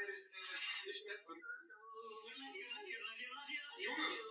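A faint, warbling voice from the edited video playing in the background, pitched up and down like yodelling.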